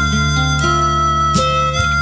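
Recorded band music in an instrumental passage: a held lead melody line changing notes every half second or so over bass and guitar, with no singing.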